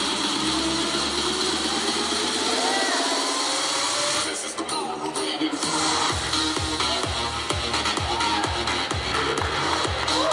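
Electronic dance music playing. After a short break about four to five seconds in, a steady bass drum beat comes in at about two beats a second.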